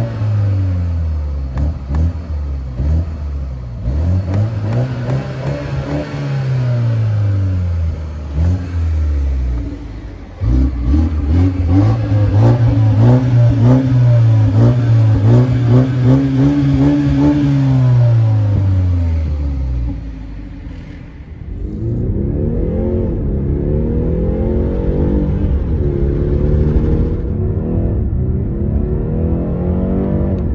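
2020 BMW 430i's turbocharged four-cylinder engine being revved repeatedly, the note climbing, holding high and dropping back several times. In the last third it settles into a steadier, wavering run.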